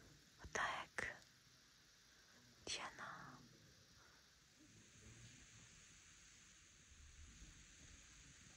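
Three short breathy, whispered sounds from a person close by: about half a second in, at one second, and near three seconds in. Otherwise near silence.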